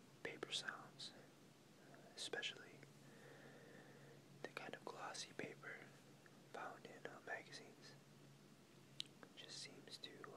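Faint whispered speech in short hissy bursts, over a low steady hum.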